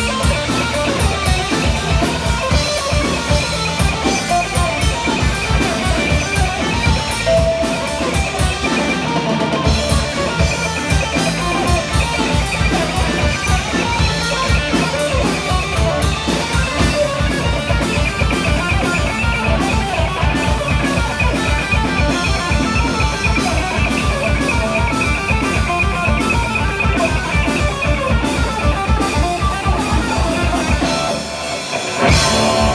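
Live instrumental rock band: a Les Paul-style electric guitar playing lead over a steady, fast drum-kit beat and electric bass.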